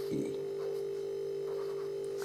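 A steady hum on one constant pitch runs throughout, with faint short scratches of a marker writing on a board.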